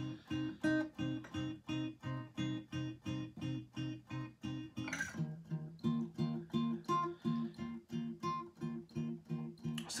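Acoustic guitar fingerpicked with thumb and middle finger, plucking out a two-chord pattern as a steady run of single notes, about three a second. The chord changes about halfway through, the bass notes dropping lower.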